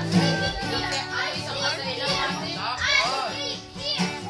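Acoustic guitar strummed in a steady rhythm, with a girl's high voice sweeping up and down over it.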